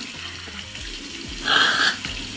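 Bathroom sink tap running steadily while face-rinsing water is scooped and splashed, with a brief louder burst near the end.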